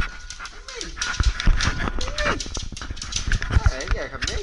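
A dog whining in a few short calls that rise and fall in pitch, over frequent clicks and knocks.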